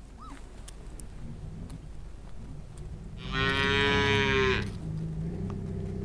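A cow mooing once, a single call of about a second and a half a little past the middle.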